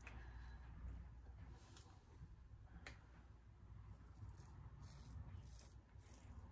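Faint scraping of a Gillette Heritage double-edge safety razor cutting lathered stubble on the neck in a few short strokes.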